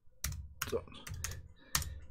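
Computer keyboard being typed on, a few keystrokes at an uneven pace.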